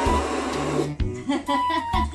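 Water splashing and churning for about the first second as a toy dinosaur is pushed into a shallow kiddie pool, over background music with steady notes.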